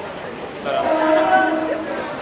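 A man's long drawn-out shout, starting a little under a second in and held for about a second on one pitch that bends slightly at the end, over crowd chatter.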